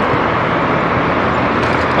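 Steady rushing noise of wind on the microphone and tyres on the road while riding a 1500-watt electric bicycle.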